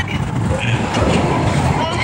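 Loud, steady rush of a moving roller coaster ride: wind rushing over the microphone and the car rumbling along its track, with a rider's voice starting up near the end.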